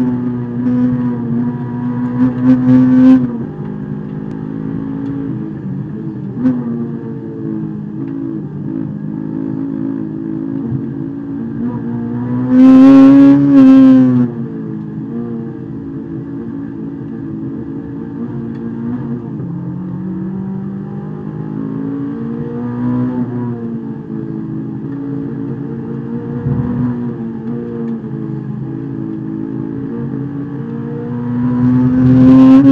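Honda S2000's four-cylinder engine heard from inside the cabin at racing pace, rising and falling in revs with the gear changes and braking. It is loudest in two hard high-rev pulls, one right at the start and one about twelve to fourteen seconds in.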